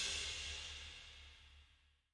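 The last hit of a drums, bass and electric-piano track dying away: a cymbal ringing out over a low bass note, both decaying to nothing within about a second.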